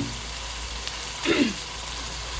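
Canned sardines with garlic and onion sizzling in hot oil in a stainless steel wok, a steady hiss as they sauté before water is added.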